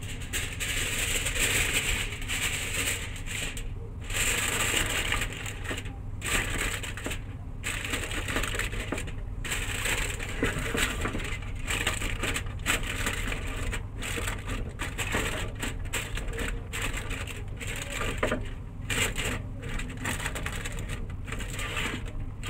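Aluminium foil crinkling and crackling as it is pressed and crimped over the rim of a round cake pan, with a steady low hum underneath. The pan is being covered before steaming so that condensed water does not drip onto the cake.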